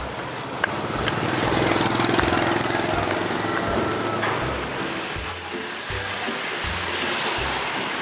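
Street traffic noise with passing motorbike engines, a steady mixed hum of the road.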